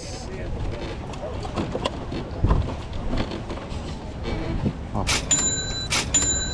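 Busy outdoor street ambience with faint background voices and scattered small handling knocks. About five seconds in comes a sharp scrape, then a short high ringing tone.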